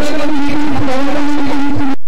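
Amplified music over a public-address system, loud and distorted, with one long note held at a steady pitch; it cuts off abruptly just before the end.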